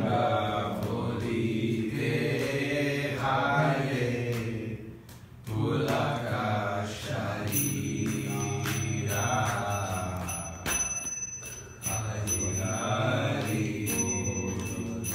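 A man's voice chanting Sanskrit prayers to a slow sung melody, in long phrases with short breaks between them. A faint, thin, steady high ringing joins about halfway through.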